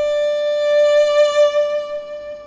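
Solo violin holding one long bowed note in a slow melody.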